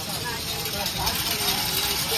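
Ambience of a busy market lane: a steady hubbub of street noise with faint voices of passers-by in the background.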